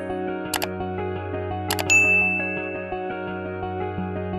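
Soft background music with subscribe-button sound effects laid over it: a mouse-click sound about half a second in, a quick double click, then a bell-like ding at about two seconds in that rings and fades.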